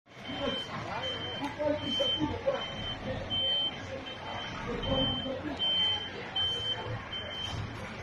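Truck reversing alarm beeping at a steady pace, one high single-tone beep a little more than once a second, over a running engine.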